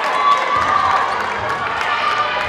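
Basketball game sound in a gym: a crowd talking and calling out, a ball bouncing on the hardwood court, and short squeaks of sneakers on the floor.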